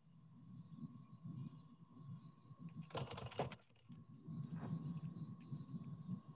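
Faint computer keyboard typing picked up by an open call microphone, as irregular soft clatter with scattered clicks. A louder short burst of noise comes about three seconds in, and a faint steady high tone sits underneath.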